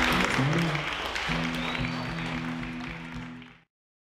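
The last chord on acoustic guitars rings out under audience applause. It fades, then cuts off about three and a half seconds in.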